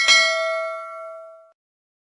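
Notification-bell sound effect: a single bell strike that rings out with several clear tones and fades away over about a second and a half.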